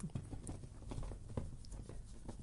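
A few faint, irregular clicks and taps over low room noise.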